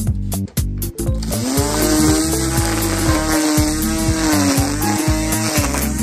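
Corded electric string trimmer starting up about a second in and cutting grass, its motor whine wavering up and down with the load and a steady cutting hiss behind it. Background music with a steady beat plays underneath.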